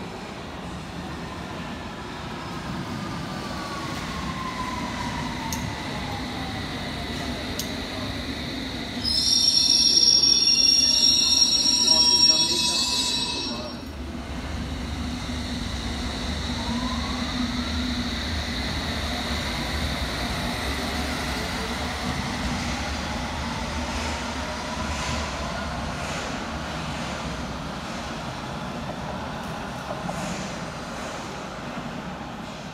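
London Underground S7 stock trains: a train's traction motors whine down in pitch as it brakes into the platform. About nine seconds in comes a loud high-pitched squeal lasting about four seconds. From about sixteen seconds the motor whine rises as a train pulls away, all over a steady rumble.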